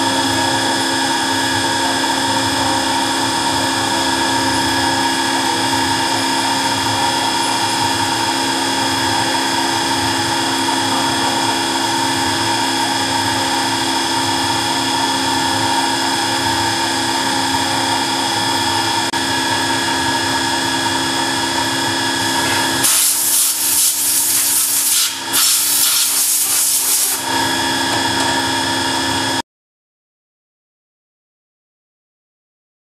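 A CNC milling machine's spindle runs with a steady multi-toned whine as a small end mill cuts a solid steel part. About five seconds from the end, a loud hiss joins for around four seconds, with a brief break partway through. The sound then cuts off suddenly.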